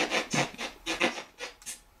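Spirit box sweeping through radio stations: choppy, stuttering fragments of static and broken sound, several a second, taken as a possible answer of "yes".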